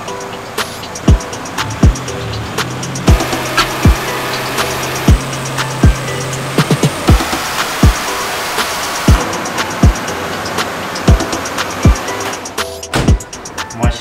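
Background music with a steady electronic beat of kick drums and hi-hats.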